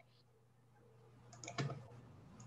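A few quick computer mouse clicks grouped about one and a half seconds in, over a faint steady low hum.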